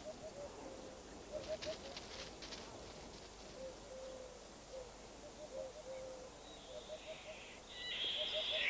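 Faint, low bird calls: short soft notes at one pitch, repeated in quick runs with a few longer held notes between. A few faint clicks come a couple of seconds in, and a higher, brighter sound builds near the end.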